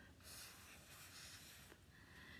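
Faint, soft hiss of breath blown across wet alcohol ink on a domino tile to spread the drops, lasting about a second and a half.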